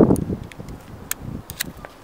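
Light rustling of apricot branches being handled, with a few sharp clicks from pruning shears and twigs, the clearest about a second in and again half a second later.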